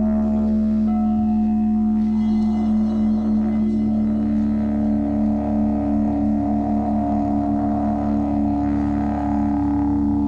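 Crystal singing bowls ringing in a sustained, layered drone of steady tones, the low tone wavering in a slow beat from a few seconds in.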